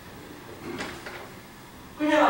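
Faint room noise with two or three brief knocks a little under a second in.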